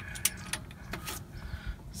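A few sharp, irregular metallic clicks and clinks from a long-handled socket wrench working the bolts of a Ford F-150's rear differential cover.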